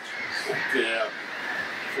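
Harsh calls of black-headed gulls from a breeding colony, heard under a man's voice.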